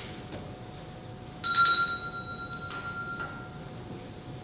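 Small metal altar bell struck once, with a bright ringing tone that fades over about two seconds, followed by two faint knocks.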